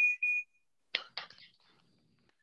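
Two sharp hand claps close together about a second in, followed by a few faint taps. Before them, the last of a word and a steady high tone stop about half a second in.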